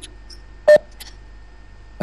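A single short electronic beep, about a second in, with a faint click just after.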